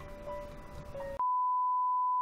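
Soft background music with a two-note pattern, cut off about a second in by a steady, louder high beep: the test tone that goes with TV colour bars.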